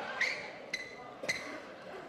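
Badminton play on an indoor court: three sharp strikes about half a second apart, each with a brief high ring, over faint hall noise.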